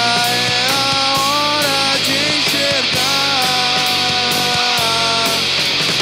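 Rock band playing live: drums with steady cymbal strokes under electric guitars, with a melody line of long held notes that bend in pitch.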